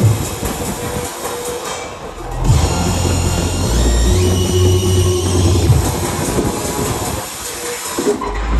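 Electronic bass music from a DJ set, played loud over a club sound system and heard through a phone's microphone. The deep bass drops out for about a second and a half near the start, then comes back in.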